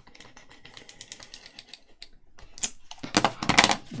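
A glue tape runner rolled along the edge of a paper sheet, giving a fast run of small clicks. Near the end comes a louder rustle and slide of paper sheets being lifted and moved over a cutting mat.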